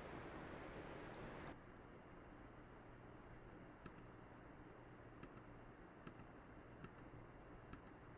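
Near silence with a few faint, scattered computer mouse clicks in the second half.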